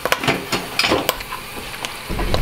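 Puffed pork rind frying in beef dripping at about 190 °C: steady sizzling with irregular sharp crackles and pops. The crackling comes from a little water on the spatula that went into the fat with the rind.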